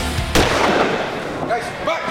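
A sudden loud boom-like impact sound effect that fades out over about a second, ending the intro title sequence. Near the end come a couple of short raised voices.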